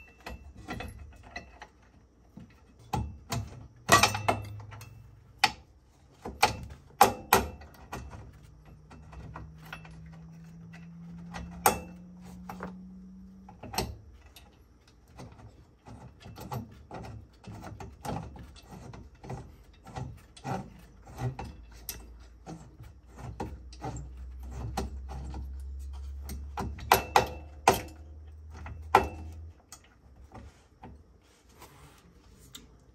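Small metal hardware, a bolt and washer, clicking and knocking against the car's underside as it is fitted by hand: scattered sharp clicks, with louder clusters about four seconds in and near the end. A low hum comes and goes underneath.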